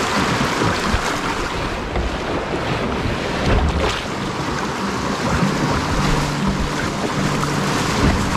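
Rushing whitewater of a fast, shallow river riffle heard close up from a kayak, with water splashing over the camera and wind buffeting the microphone.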